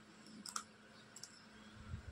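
Faint key clicks from a Dell laptop keyboard being typed on: a few scattered keystrokes, the clearest about half a second and a little over a second in.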